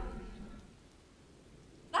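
Near silence: a faint, even hiss of background ambience, with no distinct event.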